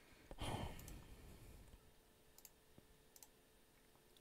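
Near silence: a soft breath into a close microphone about a third of a second in, fading over about a second, then a few faint clicks.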